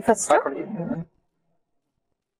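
A woman speaking for about the first second, then sudden, complete silence.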